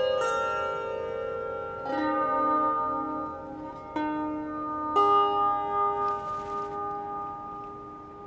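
Lyre being plucked in a slow, quiet interlude: ringing chords, with new notes struck about two, four and five seconds in, each left to ring and fade away.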